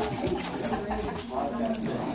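Indistinct chatter of several people in a room, with no clear words, and a sharp click at the very start.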